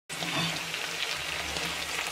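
Potato wedges sizzling as they fry in oil in a pan: a steady hiss with faint crackles.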